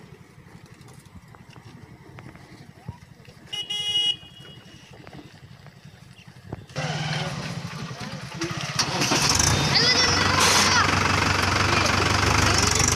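Tractor diesel engine idling with a steady low chug; a vehicle horn sounds briefly about four seconds in. From about two-thirds of the way through, a tractor engine runs much louder and closer, with voices over it.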